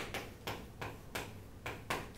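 Chalk writing on a chalkboard: a series of sharp taps and short scratchy strokes, about three a second, as letters are written.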